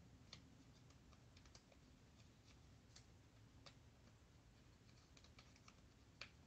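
Near silence: faint room tone with light, irregular clicks from hands handling and cutting a small sheet of water-slide decals.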